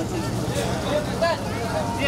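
People talking in the background, voices overlapping, over a steady low hum.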